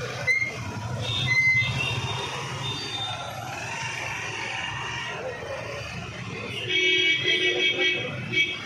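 Street traffic, with motorcycle engines running past at low speed. Near the end a vehicle horn honks loudly, first held, then in several short blasts.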